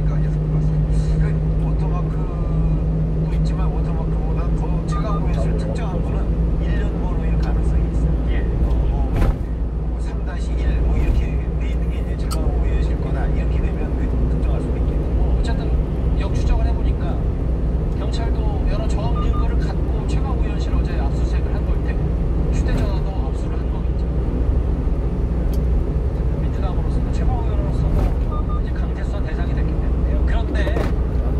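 Steady engine and road rumble inside a 1-ton truck's cab at highway speed, with a low drone that drops away about eight seconds in. A radio talk program is faintly heard underneath.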